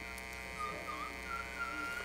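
A faint, wavering whistle-like tone that settles to a steady pitch near the end, over a low steady electrical hum.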